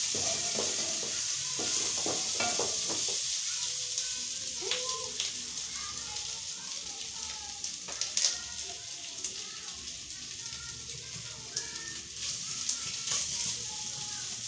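Tripe (matumbo) dry-frying in a pot over a gas flame, sizzling steadily, with occasional clicks of the spoon stirring against the pot.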